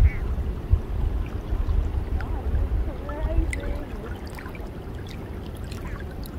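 Small waves lapping in shallow water over a sandy shore, with a steady low rumble underneath.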